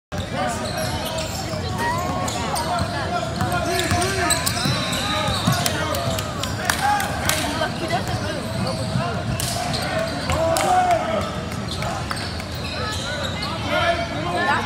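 A basketball being dribbled on a hardwood gym floor, with sharp knocks from the ball and footwork and brief high squeaks. Players and onlookers call out throughout, unintelligibly, and everything echoes in the large gym.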